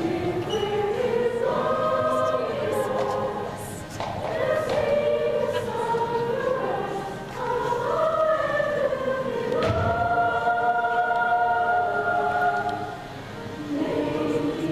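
Middle school choir singing a choral arrangement, in phrases of long held notes with short breaks at about four and seven seconds in. A single thud comes about ten seconds in.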